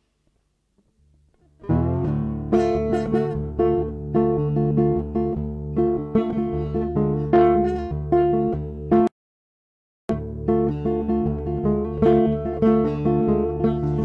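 Acoustic guitar intro played live: chords start about a second and a half in and ring on with steady picking. Near the middle the sound cuts out completely for about a second, then the guitar comes back.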